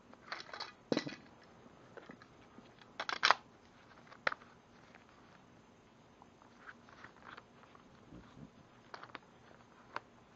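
Auxiliary side handle being worked onto the front collar of an 18-volt cordless hammer drill: a scatter of short clicks, scrapes and knocks from plastic and metal parts, the loudest cluster about three seconds in. The drill motor is not running.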